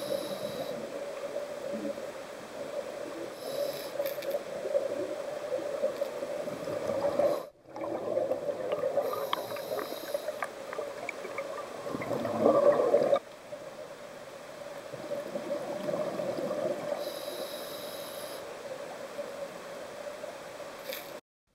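Underwater sound of a scuba diver breathing through a regulator: recurring hissing breaths and gurgling bursts of exhaled bubbles over a steady low hum. The sound breaks off sharply about seven and a half seconds in and drops in level about thirteen seconds in.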